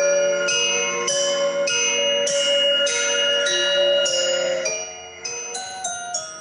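Bell-tower jingle made from recorded strikes on found metal objects such as spoons and old coffee cans, with delay and filters added: ringing, bell-like notes in a looping melody, a new note about every 0.6 s, coming quicker near the end.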